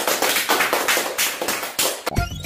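A small group of children clapping their hands together in a quick, steady rhythm.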